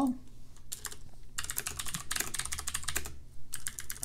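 Fast typing on a computer keyboard, a quick run of keystrokes that starts about a second in.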